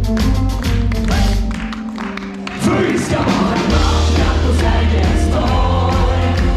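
Live band playing an upbeat pop song with many voices singing together. Regular drum beats run through it; the music thins out briefly a couple of seconds in, then comes back in full with heavy bass.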